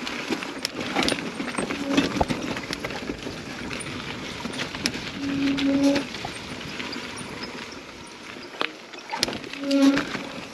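Mountain bike rolling down a rocky, rooty trail: a busy clatter of knocks and rattles from the tyres striking rock and the bike's frame and chain shaking. Three short steady hums come through it, about two seconds in, around five to six seconds in, and right at the end.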